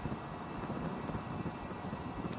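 Steady low rumble and hiss of background noise, with no distinct event standing out.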